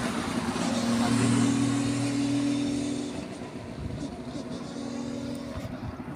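A car passing close by on an open road: its engine hum and tyre noise swell to a peak about a second in, then fade away.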